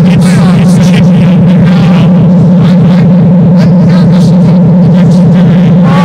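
A loud, steady low drone with men's voices over it.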